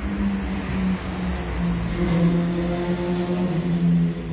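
A steady, low, held tone, like a sustained background note, over a low rumble. Its pitch shifts slightly about a second in, and it gains fuller overtones from about two seconds in.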